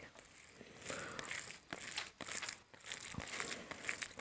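Fingers mixing and squeezing rice with curry on a plate: faint, irregular squishing and crackling with small clicks.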